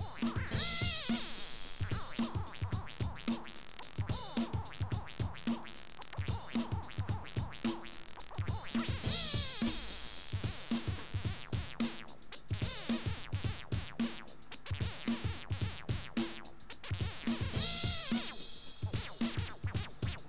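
Drum-machine loop with a synth bass line played through a DIY MS-20-style filter, its cutoff swept by an inverted envelope of the drum loop. The filter opens and closes in time with the beat, giving whistling resonant sweeps up and down every few seconds.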